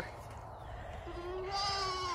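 A goat bleating: one long, steady call that starts faintly about a second in, grows fuller, and drops slightly in pitch as it ends.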